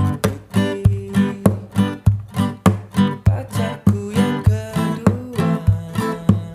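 Acoustic guitar strummed in a steady reggae rhythm, about three strokes a second, some strokes sharper and more percussive than others, moving through G, Am, C and D chords.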